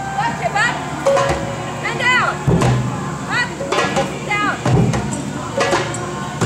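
A hand drum struck with a few single deep strokes, about a second or so apart. Between them come short calls from a voice that rise and fall in pitch.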